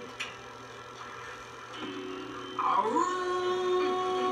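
A woman's voice howling like a dog: a rising glide about two and a half seconds in that settles into a long held note.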